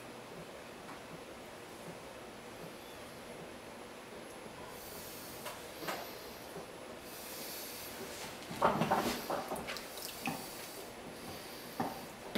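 Hands working wet clay on a spinning potter's wheel: faint wet rubbing and squishing, with louder handling noises about nine seconds in.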